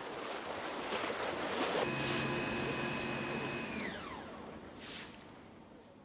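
Floodwater splashing and sloshing as people wade through it pulling an inflatable boat, swelling and then fading away. A steady high whine joins in about two seconds in and slides down in pitch just before four seconds.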